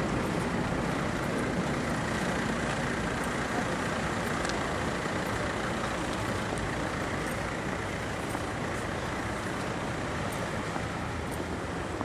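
Steady road traffic noise on a city street, a vehicle running close by.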